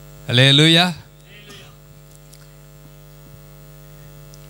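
Steady electrical mains hum through a microphone and PA system. A man's voice cuts in loudly for about half a second near the start, then only the hum remains.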